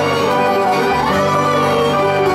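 A band playing an instrumental passage of a Greek popular song, with bouzouki and accordion carrying sustained melodic notes over a steady bass.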